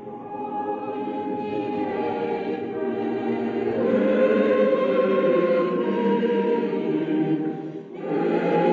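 A choir singing slow, held chords, growing louder about four seconds in and dipping briefly just before the end.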